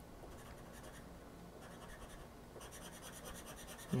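Scratch-off lottery ticket being scraped with a handheld scraper: faint, quick scratching strokes across the coating, busier over the second half.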